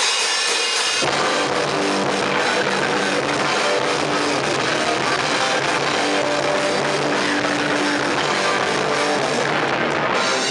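Live hardcore punk band with electric guitars, bass and drum kit breaking straight into a song. The sound comes in suddenly and loud, and the fuller low end of bass and drums joins about a second in.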